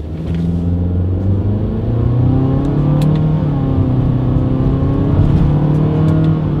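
2020 Honda Fit's 1.5-litre four-cylinder engine accelerating hard from a standstill through its CVT in manual mode, heard inside the cabin. The engine note climbs and drops back in steps as the paddle shifters call up simulated upshifts.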